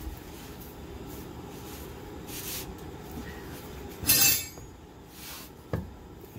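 A large 50 mm wrench worked on the drive-shaft nut at the differential, with a steady low background rumble. About four seconds in there is one loud, short metallic clank, and a softer knock comes near the end.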